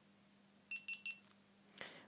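GoPro Hero2 camera giving three short, quick electronic beeps as it powers on.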